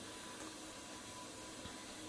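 Quiet room tone: a steady, even hiss with a faint thin hum underneath.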